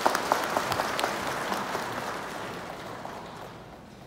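Audience applauding, with sharp claps close by in the first second or so, fading away toward the end.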